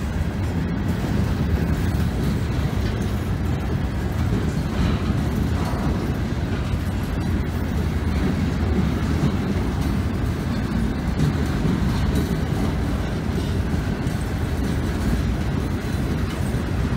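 Freight train hopper cars rolling past, a steady rumble of steel wheels on the rails.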